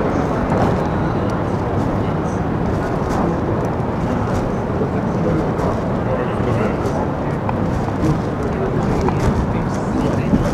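Steady outdoor urban ambience: a continuous wash of traffic noise with the voices of people nearby talking.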